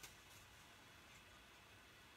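Near silence, with one faint click at the start and a couple of fainter ticks: small paper snips closing as they trim around a stamped image in cardstock.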